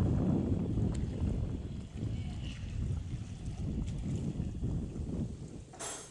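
Wind buffeting the microphone: an uneven low rumble that drops away near the end, just after a brief click.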